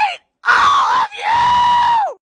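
A person screaming twice, loudly: a short harsh scream, then a long high scream held on one pitch that drops away at the end.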